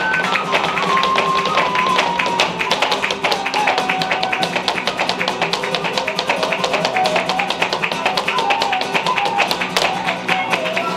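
Live flamenco: fast percussive strikes of shoe heels and soles on a wooden stage (zapateado) mixed with hand claps (palmas), over flamenco guitar and a held, stepping melody.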